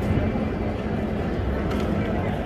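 Steady low rumble of outdoor street background noise, with no distinct strokes or clicks standing out.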